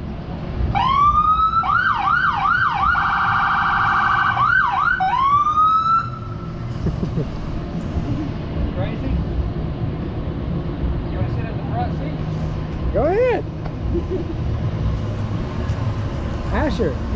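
Fire department vehicle's electronic siren sounding for about five seconds, stepping from a rising wail into quick up-and-down yelps and a rapid warble, then a last rise before it cuts off about six seconds in. A low steady rumble remains after it.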